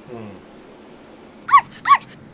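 Two short, high-pitched dog yips, a third of a second apart, near the end.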